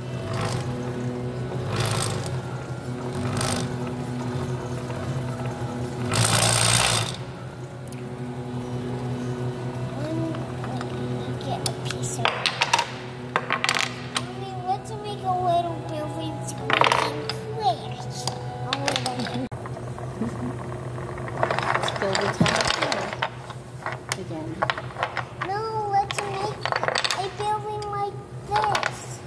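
Wooden building blocks clacking against each other and against a wooden tabletop as they are fitted and stacked, over background voices and a steady low hum. There is a brief loud rush of noise about six seconds in.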